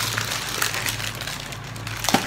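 Packaging crinkling and rustling as a grocery item is handled, over a steady low hum.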